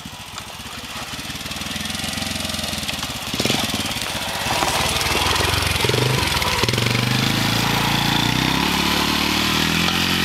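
Honda FourTrax 90 youth ATV's small single-cylinder four-stroke engine running, getting louder over the first four or five seconds as the quad comes down the hill toward the microphone, then running loudly under throttle as it passes and pulls away up the trail.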